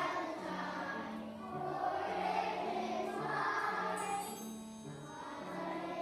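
A large choir of kindergarten and first-grade children singing together, over an instrumental accompaniment whose low notes step from pitch to pitch.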